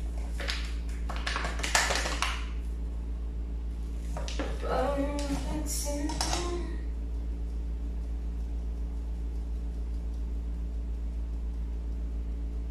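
Kitchen prep handling at a counter: a squeeze bottle squirted into a steel bowl, with a few short noisy bursts in the first two seconds and again about four to six seconds in. A brief murmur of a voice comes around five seconds in, over a steady low hum.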